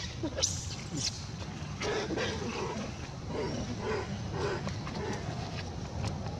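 Short animal calls repeated several times, roughly twice a second at times, over a steady low background noise.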